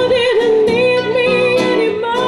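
A live band playing: a woman singing with wide vibrato, held notes bending in pitch, over saxophone and guitar.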